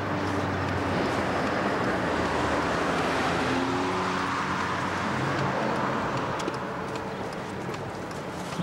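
Car's engine and road noise heard from inside the cabin while driving, a steady rumble and hiss that eases slightly near the end.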